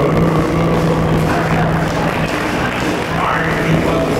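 Live band playing amplified music with electric guitar, with a low note held for most of the passage.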